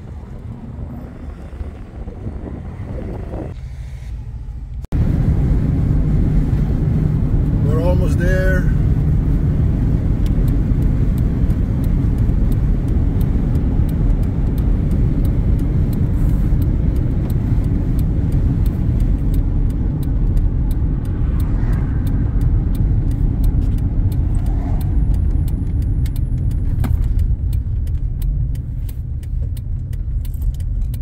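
Wind noise on the microphone for the first few seconds, then, after a sudden cut, steady low road and engine rumble heard from inside a car cruising on a paved road.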